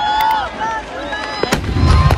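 Fireworks packed into a Dussehra Ravan effigy going off: sharp crackling pops, then a deep boom about one and a half seconds in, the loudest moment.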